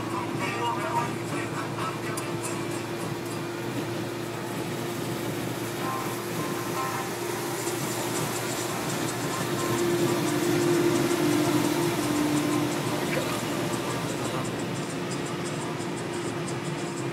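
Steady engine and road noise inside a moving Suzuki Jimny, with a constant hum that swells a little about two-thirds of the way through. Music with singing plays along underneath.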